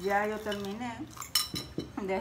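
A metal spoon clinking against a bowl while eating, with a couple of sharp clinks about a second and a half in. A voice is heard in the first half.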